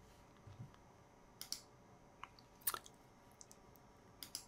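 A handful of faint, sharp clicks of a computer mouse, spaced unevenly, the loudest nearly three seconds in.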